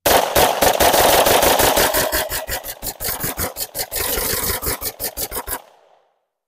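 Rapid gunfire from two shooters firing 9mm +P rounds together, several sharp shots a second, overlapping into a continuous string. The shots stop abruptly near the end.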